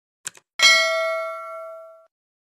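Subscribe-button animation sound effect: two quick clicks, then a bright bell ding that rings with several tones and fades out over about a second and a half.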